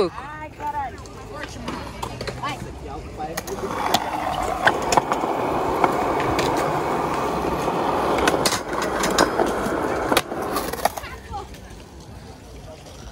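Skateboard wheels rolling on pavement, starting about four seconds in and stopping near the end. Several sharp clacks of the board hitting the ground punctuate the rolling, as in a trick attempt.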